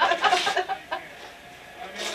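A person laughing in quick, clucking bursts that die away about a second in, leaving low room noise.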